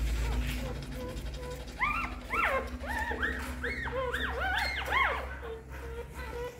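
Newborn puppies crying: faint whimpers, then a rapid run of about a dozen high, rising-and-falling squeals from about two seconds in to about five seconds in.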